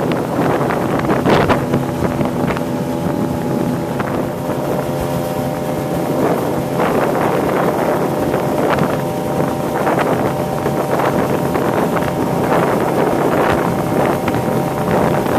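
Outboard motor running steadily at speed, with water splashing and wind buffeting the microphone in repeated gusts.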